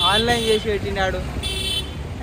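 A vehicle horn sounds once, briefly, about a second and a half in, over a steady low rumble of street traffic.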